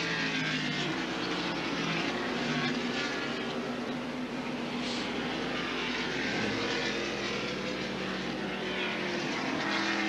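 NASCAR Winston Cup stock cars' V8 engines running at racing speed on a road course, several cars overlapping, their engine pitch rising and falling as they brake and accelerate through the corners.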